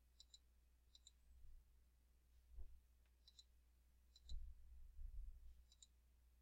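Computer mouse clicking in quick double clicks, about five times, over near silence, with a few dull low bumps, the loudest about two-thirds of the way through.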